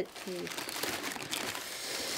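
Packaging crinkling and rustling steadily as a boxed figurine is handled and taken out of its protective wrapping.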